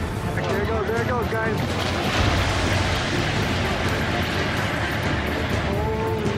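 Voices shouting in the first second or so and again near the end, over a loud rushing roar with a low rumble that swells in the middle, with music beneath.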